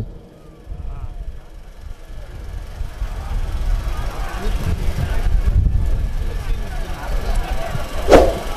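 A large outdoor crowd of horsemen and spectators: faint, indistinct shouting voices over a low rumble that grows louder toward the end.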